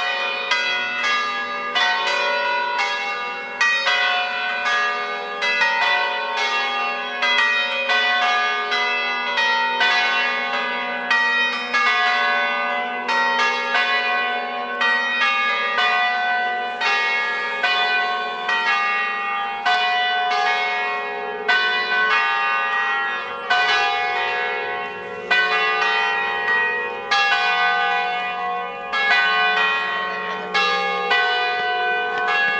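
A ring of five church bells tuned in F#3, cast by Carlo Ottolina e Figli of Seregno, ringing together in a solemn concerto. Strikes follow one another at about two to three a second, each bell's ring overlapping the next.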